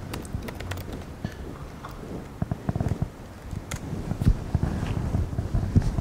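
Scattered sharp clicks, soft knocks and low thuds, close to the microphone: laptop clicks and footsteps on a hard floor.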